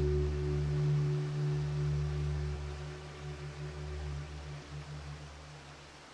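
Classical guitar's last low chord ringing out and slowly dying away, leaving only faint hiss near the end: the close of a piece.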